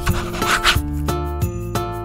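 A marker pen's tip rubbing across paper in a short stroke during the first second, over background music with a steady run of notes.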